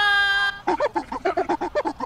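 Soundtrack of a comedy video edit: a held pitched note for about half a second, then a fast run of short choppy vocal-like sounds, about six or seven a second.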